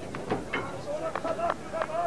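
Indistinct voices of people on the field or in the crowd, several short calls or snatches of talk with no clear words.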